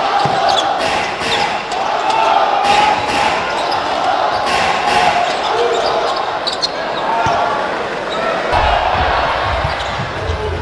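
Live game sound of an indoor basketball game: the steady din of an arena crowd, with a basketball bouncing on the hardwood court in repeated sharp knocks.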